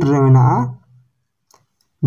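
A man's voice speaking one short word, then near silence broken by one faint click about one and a half seconds in.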